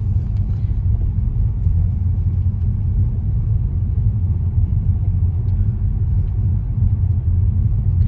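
Steady low rumble of a moving car, heard from inside the cabin.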